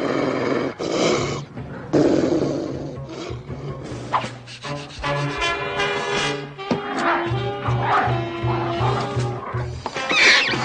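Orchestral cartoon score with dogs barking from inside a crate. The barks come as two loud rough bursts in the first three seconds; after that it is mostly the music, with a repeated bass note near the end.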